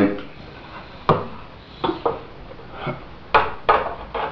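A hollow fiberglass model airplane fuselage handled and turned over in the hands, giving a handful of short knocks and rubbing sounds at irregular intervals.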